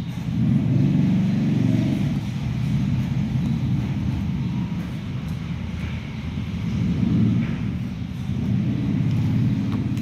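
A motor vehicle's engine running with a low rumble that swells and eases off several times.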